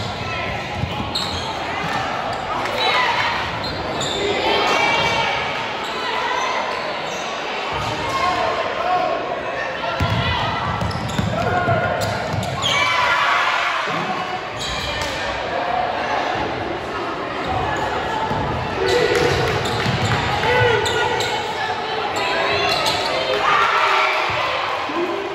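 Basketball game in a gym: the ball bouncing on the court amid indistinct crowd chatter and shouts, echoing in the large hall.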